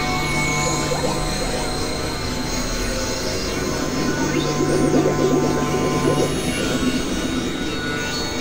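Experimental synthesizer music: layered held drone tones with a few sliding pitches. A low held tone stops about six seconds in, and a dense, fluttering mid-range texture swells from about four seconds in.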